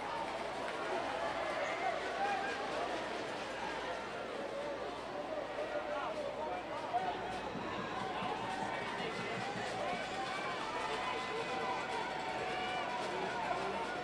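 Ballpark crowd chatter: many spectators talking at once in a steady murmur of overlapping voices.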